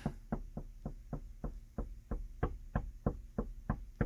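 A child's fist knocking rapidly and steadily on the inside of a car's side window glass, about five or six knocks a second.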